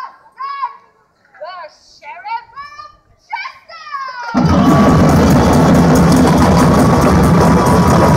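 Short high voices calling in broken phrases, then a little over four seconds in a parade drum band starts up loudly, with heavy drumming and a held tone above it.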